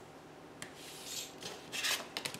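Ballpoint pen scratching a straight line across paper along a plastic ruler, then a louder scrape near the end as the ruler slides across the sheet.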